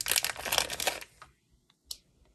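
Small clear plastic zip-top sample bag crinkling as it is handled, a dense run of crackles for about the first second. Then it goes quiet apart from one faint click near the end.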